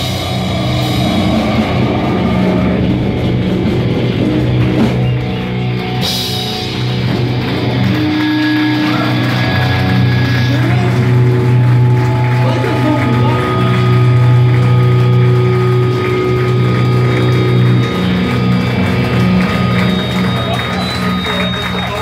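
Live hardcore band played loud through a hall PA: distorted guitars, bass and drums. A crash about six seconds in is followed by a long, steady low drone with held guitar tones ringing over it.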